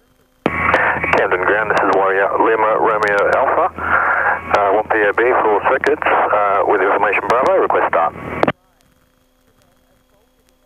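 A radio call on the aircraft's VHF radio: a voice transmission, thin and narrow-sounding, that starts about half a second in and cuts off sharply after about eight seconds.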